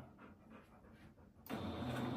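Near silence, then about one and a half seconds in a Singer electric sewing machine starts up and runs steadily.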